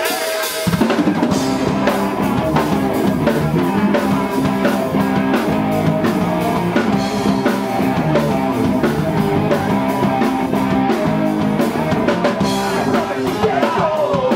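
Live rock band playing an instrumental passage: drum kit, bass guitar and electric guitar come in together about a second in and keep a steady driving beat.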